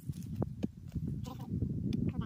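Pickaxe digging into the soil around a tree stump: a few dull thuds of the blade striking the ground.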